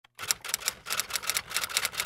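Rapid typewriter key clicks, about six or seven a second, some strokes louder than others.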